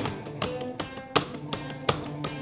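Fender Telecaster-style electric guitar playing a quick run of picked single notes and double stops, with a delay echoing the notes.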